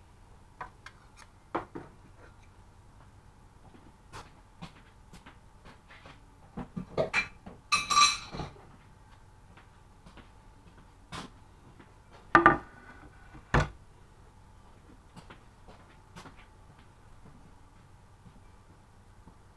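Kitchen clatter as pans, jars and utensils are moved about and set down on a worktop: scattered clicks and knocks, a run of ringing clinks about seven to eight seconds in, and two heavier knocks about twelve and thirteen seconds in.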